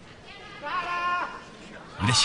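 A single high-pitched, drawn-out human shout lasting under a second, rising slightly and then dropping, over a low murmur of arena ambience.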